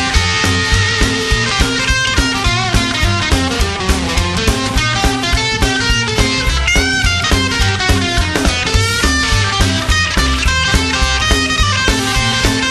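Rock and roll band playing an instrumental break: electric guitar lead with bent notes over a driving bass and drum beat.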